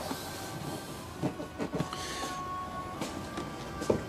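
Faint background music with thin held tones, over low room noise, with a few short soft knocks.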